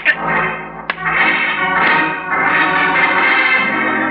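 Organ music bridge from a 1940s radio drama: sustained loud chords, opening with two short sharp accents in the first second, covering the scene of the beating before the narration resumes.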